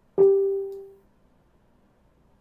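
A single struck musical note, like a chime or piano key, sounding once and ringing out within about a second.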